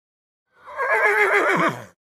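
A horse whinnying once: a quavering neigh of about a second and a half, starting about half a second in and dropping in pitch at the end.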